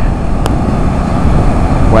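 Heavy, steady rush of stormwater pouring through a row of outlet gates from a deep flood-overflow tunnel and churning into the river below: a big release of stored rainwater.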